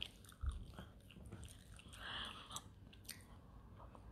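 Faint chewing of bread, with scattered small mouth clicks and a soft knock about half a second in.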